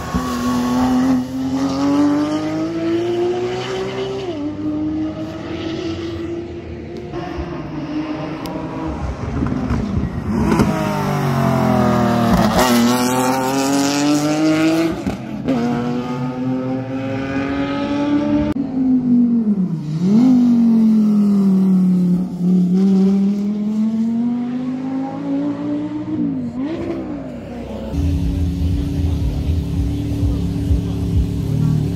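Porsche 911 GT3 Cup race car's flat-six engine, loud, revving up and dropping in pitch as it shifts gear and drives past, again and again. About two seconds before the end the sound changes to a different engine running lower and steadier.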